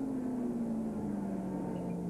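Racing saloon car engine under way, one steady note sliding slowly down in pitch.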